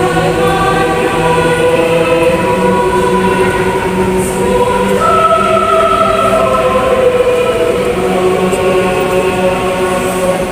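A youth mixed choir singing a church choral song in long, sustained chords. A higher part enters on a new held note about five seconds in.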